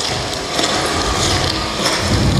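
Handling noise from a handheld camera carried while its holder walks on a snowy pavement: irregular rubbing and knocking on the microphone with a low rumble.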